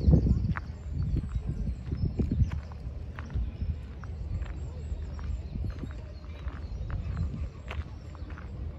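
Footsteps of a person walking over grass, a soft thud about every half second. They are heavier in the first couple of seconds and lighter after.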